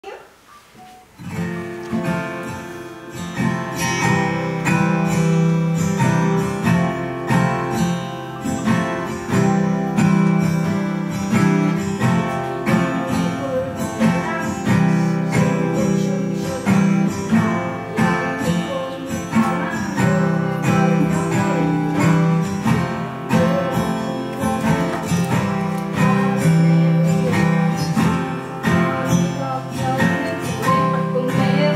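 Acoustic guitar played solo as a song's introduction, starting about a second in, with plucked notes ringing over sustained low notes.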